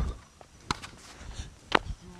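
Two sharp knocks about a second apart, the second the louder: the plastic ball and bat of a wiffle ball game.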